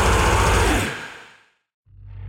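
Death metal band's last chord ringing out and fading to silence about a second and a half in, the gap between two album tracks. Just before the end the next track begins with a low held note swelling up.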